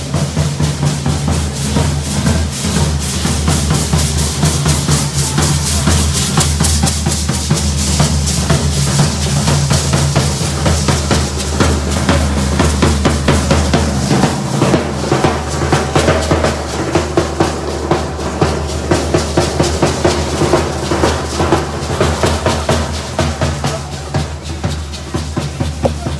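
Matachines dance drums: large bass drums beaten in a fast, driving, steady rhythm that keeps the dancers' step.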